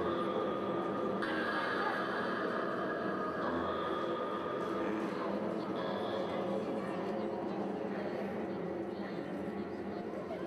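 A steady, layered drone of held tones that shift in pitch every few seconds, over an indistinct murmur of voices.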